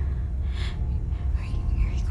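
A low, steady rumbling drone from a tense film score, with a woman's audible breath about half a second in.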